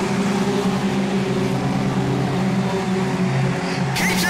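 Junior sedan race cars running around a dirt speedway track, their engines a steady hum held at even revs.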